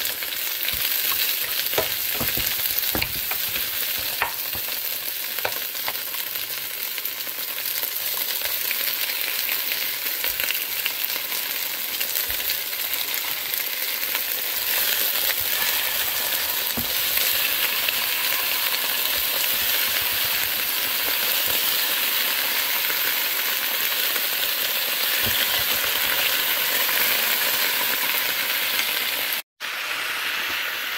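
Hot oil sizzling in a nonstick frying pan as scallions, garlic and ginger fry, with a wooden spatula tapping and scraping the pan a few times in the first several seconds. The sizzle grows louder about halfway through as fish steaks are laid into the pan.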